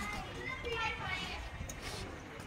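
Indistinct voices in the distance, high-pitched like children's, over a low rumble.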